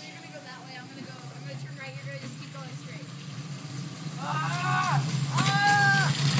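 Homemade wooden gravity carts rolling downhill on asphalt, their wheel rumble growing steadily louder as they approach. Near the end, two long yells ring out over the rumble.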